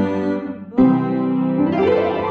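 Piano accompaniment playing the closing bars of a children's song: a chord struck at the start and another just under a second in, then a quick rising run of notes near the end that rings on.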